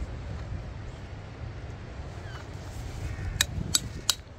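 Two sharp metallic taps, about a third of a second apart near the end: a hammer striking a chisel set against a small sea-worn fossil nodule to split it open. A low steady rumble runs underneath.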